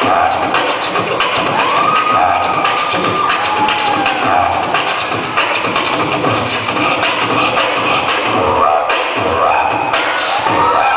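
Beatboxing into a hand-cupped microphone over a PA: a fast, continuous run of vocal drum hits. The audience cheers and whoops over it.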